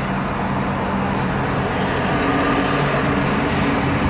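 Honda Fit hybrid running with an aftermarket Kakimoto Kai exhaust, heard from inside the cabin as the car pulls away, with a steady low hum over road noise. A slightly higher tone joins about two seconds in.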